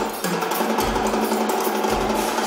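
Live band music playing at a concert, with a bass drum beat landing about once a second.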